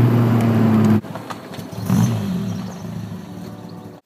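Peugeot 205 GTI's four-cylinder petrol engine heard from inside the cabin, a loud steady note while driving, cut off abruptly about a second in. Then the engine is heard more quietly: it revs up briefly around two seconds in and fades away.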